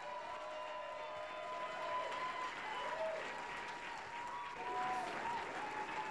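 Audience applauding, with a thin steady tone running through it.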